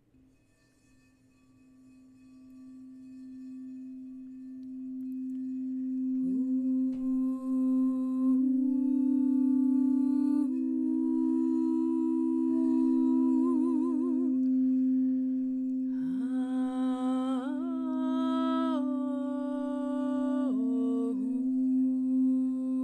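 A singing bowl's steady ringing tone swells in over the first few seconds and holds. About six seconds in, a woman's voice joins above it, toning wordless notes that slide up into each new pitch, with a wavering vibrato around the middle.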